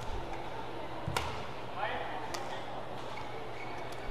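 Badminton rackets striking a shuttlecock during a rally: sharp cracks about every second and a bit, three of them, the loudest about a second in. They sit over steady arena ambience, with a short rising squeak around two seconds in.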